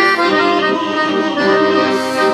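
Piano accordion playing: sustained reed chords under a melody that steps from note to note.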